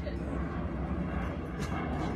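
Steady outdoor rumble and hiss from a phone recording, with no clear single source standing out.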